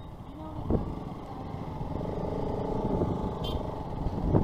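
Bajaj Pulsar RS200 motorcycle engine running at low speed, a steady low rumble, with a single knock about a second in.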